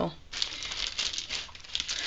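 Paper and cardstock rustling and crinkling as a handmade card is handled, a dense run of small crackles starting just after the start.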